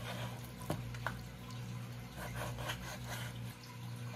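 A chef's knife cutting through raw pork ribs on a plastic cutting board: the blade knocks sharply on the board a couple of times about a second in, between quieter wet sounds of the meat being handled. A low steady hum runs underneath.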